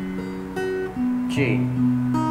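Acoustic guitar with a capo playing chords, its notes entering one after another and ringing on, changing chord about a second in. A voice briefly calls out the chord name "G".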